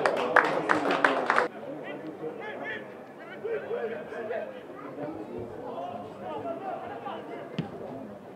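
Voices of players and onlookers calling and chatting at a football pitch. A few sharp knocks sound in the first second and a half, then the sound drops suddenly to quieter background chatter.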